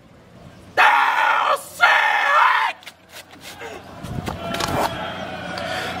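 Two loud shouted yells, each under a second long, about one and two seconds in, followed by quieter voices in the background.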